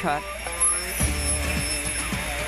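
Soft background music with held notes. About halfway through, a steady low machine hum and hiss from the factory comes in under it.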